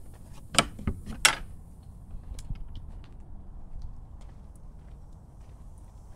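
Two sharp metallic clicks from a wooden fence gate's latch as the gate is worked open, followed by a low rumble with a few faint ticks.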